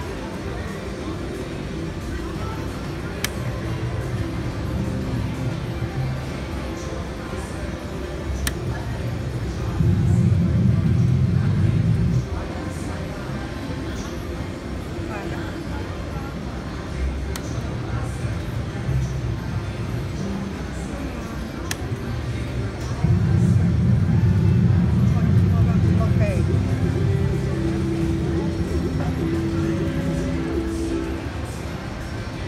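Video slot machine sound effects and electronic music over casino background noise. A loud, bass-heavy swell comes about ten seconds in and another about twenty-three seconds in. Near the end a repeating tone plays as a win counts up on the meter.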